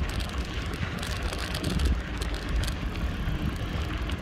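Bicycle rolling over packed sandy ground, with wind rumbling on the microphone and scattered small clicks from the tyres and bike.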